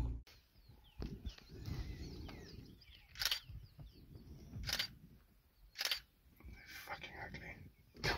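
Single-lens reflex camera shutter firing three single shots, about a second and a half apart, over a faint low rumble.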